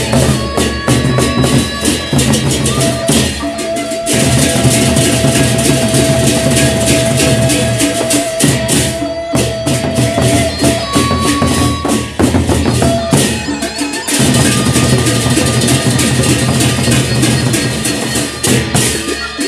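Gendang beleq ensemble of large Sasak double-headed barrel drums struck with sticks, playing a fast, dense interlocking rhythm over a wash of metal percussion and a few held pitched tones. The playing grows fuller about four seconds in, thins out around twelve seconds, and swells again near fourteen seconds.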